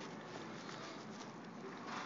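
Faint steady background hiss with a few soft ticks, no voice.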